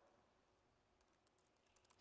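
Near silence with a few faint laptop keyboard clicks as a word is typed, mostly in the second half.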